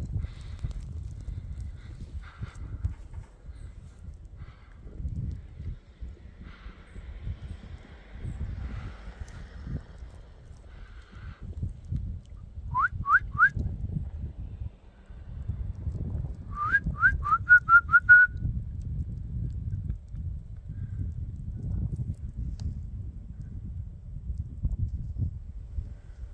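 A person whistling to call dogs: three quick rising whistles about halfway in, then a longer run of short rising whistles a few seconds later. Under them runs a steady low rumble of wind on the microphone.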